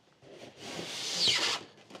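Styrofoam packing insert rubbing and squeaking against the inside of a cardboard box as it is pulled up, a scraping sound lasting about a second.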